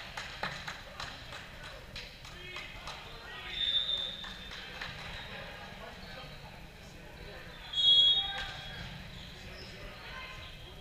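Large gym hall with scattered ball knocks on the court in the first few seconds and a murmur of voices, broken by two short referee whistle blasts: a softer one about 3.5 s in and a louder one about 8 s in.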